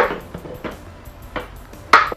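Sharp clunks and clinks of a plastic blender jar being handled and set in place: a loud one at the start, two fainter knocks in between and another loud one near the end.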